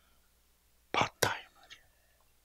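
Quiet room tone, then a man's two short whispered, breathy syllables about a second in, close on a handheld microphone.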